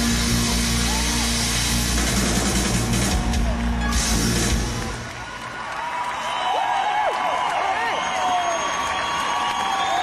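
A live band plays the end of a boogie rhythm-and-blues number and stops about halfway through. The audience then cheers and whoops.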